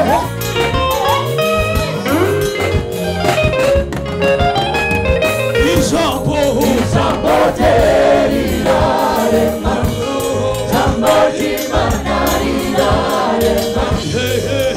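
Gospel choir singing with a live band of drum kit and electric bass guitar, the drums keeping a steady beat.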